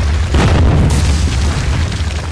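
Sound-effect boom and crash of a stone wall shattering, over a steady deep rumble, with a sharp burst of breaking rubble about half a second in and a second crack near one second.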